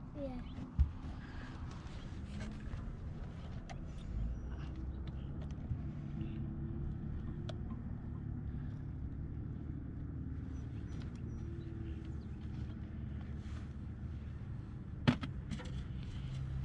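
Steady low rumble with faint handling noise in an aluminium boat: a sharp knock about a second in, a few light ticks, and a sharp click near the end as a bass is hung on a handheld digital scale.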